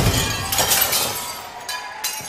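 Glass-shattering sound effect: a crash as the music cuts off, then tinkling shards that fade away.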